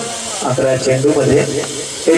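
Men's voices talking through the whole stretch: speech only, with no distinct bat or ball sound.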